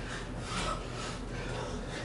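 Faint rubbing and breathing from two people doing push-ups on a wooden floor, one of them on push-up handles.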